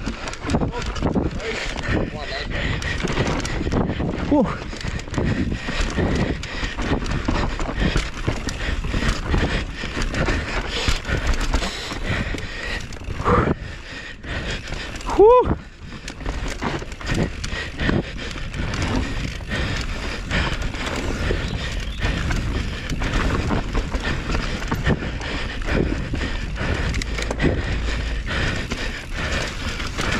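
Mountain bike ridden fast down a rough dirt trail, recorded on the bike or rider: a constant rattle and clatter of the bike over roots and bumps, with tyres on dirt and wind rumbling on the microphone. A short call that rises and falls in pitch comes about halfway through.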